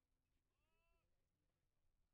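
Near silence, with a faint, short, pitched call lasting about half a second, about half a second in.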